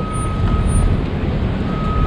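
Steady rumble of city street traffic, with a thin, steady high tone that cuts out for under a second mid-way and comes back.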